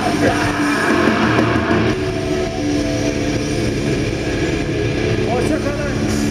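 Heavy metal band playing live through a festival PA, with long held distorted guitar notes and voices shouting over them.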